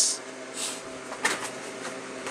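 Handling noise from a carded die-cast toy car being moved: a short rustle, then a light plastic click of the blister pack, over a faint steady hum.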